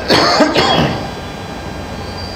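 A man coughs twice in quick succession, close to a microphone, in the first second; then only the room's steady background.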